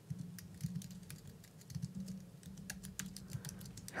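Faint typing on a computer keyboard: a quick, uneven run of keystrokes.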